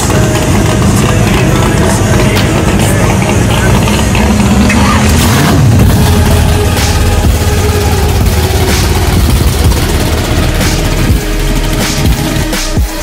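A 1969 Chevrolet Chevelle drag car's engine running, loud and steady, mixed with music.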